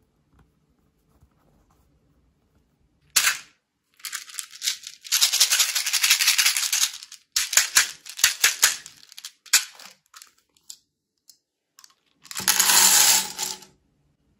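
Small plastic beads rattling inside a plastic toy bottle and pouring out into a metal muffin tin, in several bursts, the longest a few seconds in and a last pour near the end.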